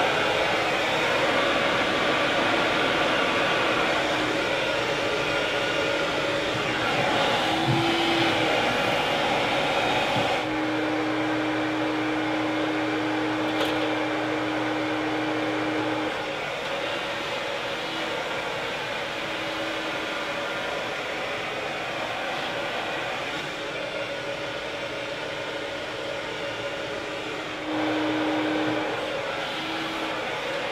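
Handheld hair dryer blowing steadily on a section of long hair wrapped around a round brush. A steady hum comes and goes as it is moved, and the sound gets a little quieter about midway, then louder again near the end.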